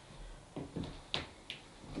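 Shoes stepping and scuffing on paving slabs: a few short taps and scuffs in quick succession, between about half a second and a second and a half in.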